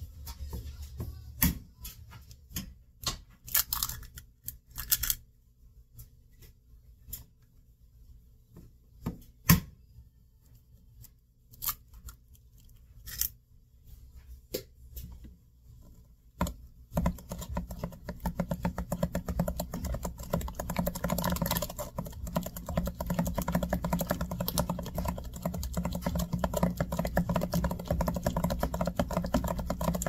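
Eggs being cracked into a glass mixing bowl, heard as a scattering of sharp shell taps and cracks. A little past the middle a silicone spatula begins mixing them into wet mashed-banana batter, a dense, continuous run of quick stirring and scraping strokes against the glass.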